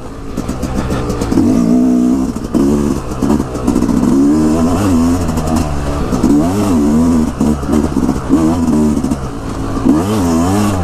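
Yamaha dirt bike engine being ridden hard, its pitch rising and falling over and over as the throttle is opened and closed.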